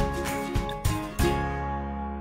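Background music: a few notes struck in quick succession, the last one ringing out and fading away.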